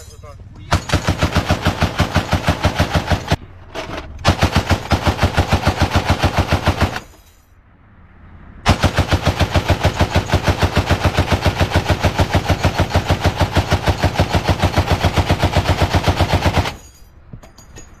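M2 Browning .50-calibre heavy machine gun firing in sustained automatic bursts at about eight shots a second: a burst of about two and a half seconds, another of about three seconds, then a pause and a long burst of about eight seconds.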